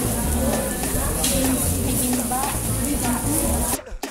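Meat sizzling on a tabletop Korean barbecue grill pan, with voices in the background; the sound drops out briefly just before the end.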